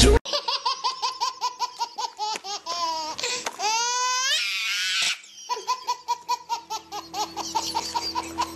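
High-pitched laughter in rapid "ha-ha" bursts, about six a second. Around the middle there is a squealing rise and fall, then a brief break, and the laughter starts again.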